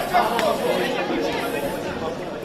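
Background chatter: several people talking at once in a large hall.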